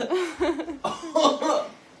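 A man laughing in several short bursts.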